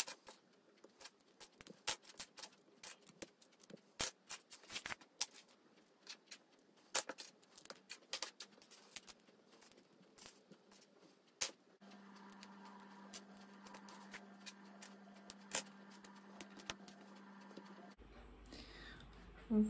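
Plastic Lego bricks clicking as small pieces are pressed together and picked out of a loose pile on a wooden tabletop: an irregular run of sharp little clicks, thinning out in the last few seconds.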